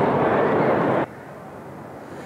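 Steady, loud rushing outdoor noise with no pitch, like wind or distant traffic, that stops abruptly about a second in. It gives way to a much quieter background hush.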